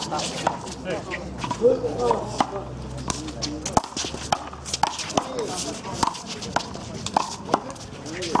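Rubber handball being slapped by hand and smacking off a concrete wall in a one-wall handball rally: a string of sharp, irregular smacks.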